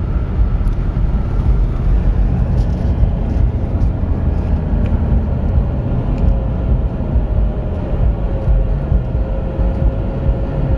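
Road and engine noise heard inside a moving car: a steady low rumble, with a faint steady hum coming in about halfway through and sinking slightly in pitch.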